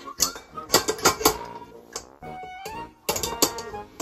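Stainless steel bowl of a KitchenAid stand mixer clinking and knocking against the metal mixer as it is handled and hooked into place: a string of sharp metallic clanks, with a cluster of them near the end.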